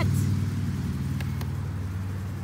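A low, steady engine hum, with two faint clicks a little past the middle.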